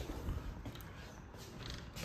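A room door being opened: a faint creak with light clicks from the latch and handle.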